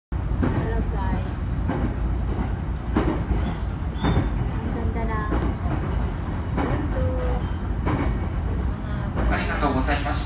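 Passenger train running on rails, heard from inside the carriage: a steady low rumble with occasional short knocks.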